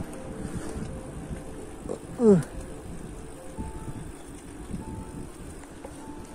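Steady low rumble of wind and movement on the microphone while travelling along a roadside path, with one short, loud falling call about two seconds in.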